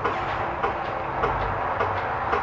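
A steady low hum and rumble of background noise, with no sudden sounds.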